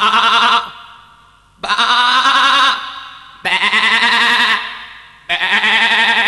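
Sheep bleating: four long, quavering baas, each about a second long, coming roughly every two seconds.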